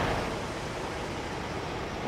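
Steady outdoor street noise: an even rumble and hiss with no distinct events.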